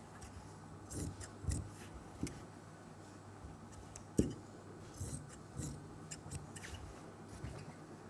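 Scissors snipping through fabric in short, irregular cuts, with the rustle of cloth being handled. A sharper knock of the scissors or hand on the table comes about four seconds in.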